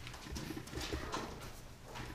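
Pen scratching on paper in short irregular strokes as words are written out by hand.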